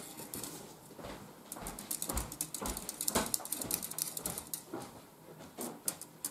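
Small metal whisk clinking and scraping against the inside of a mug as hot chocolate is stirred, in irregular strokes that thin out near the end.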